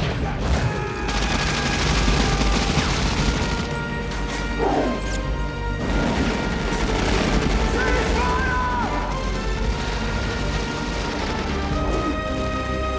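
Film gunfight soundtrack: loud, continuous rifle fire, impacts and crashes mixed with an orchestral score.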